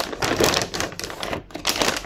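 Clear plastic zip-lock bag crinkling and crackling in irregular bursts as hands handle it, with chunks of raw cassava inside.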